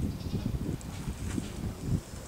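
A miniature Jersey heifer shifting about restlessly while being palpated, with irregular low knocks and scuffs.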